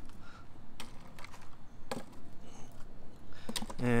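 Ice cubes dropped into a styrofoam cooler onto ice and plastic water bottles: a few scattered sharp clinks and knocks.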